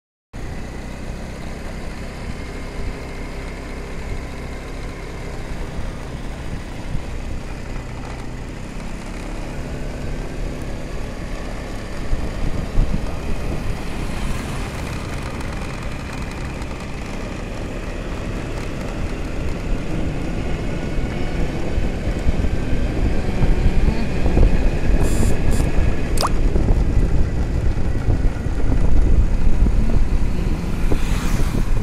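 A vehicle moving along a paved road: a steady low rumble of engine and road noise that grows louder over the last ten seconds. A few sharp clicks come near the end.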